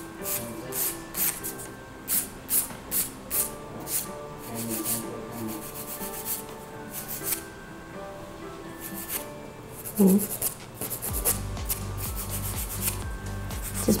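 Hand nail file rasping against an acrylic nail in short back-and-forth strokes, about two a second, contouring the sides of the nail. Soft background music runs underneath.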